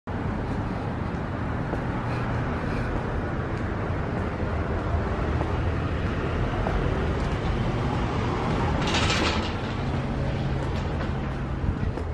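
Steady outdoor traffic noise with a low rumble, as heard walking along a storefront, with a brief hiss about nine seconds in.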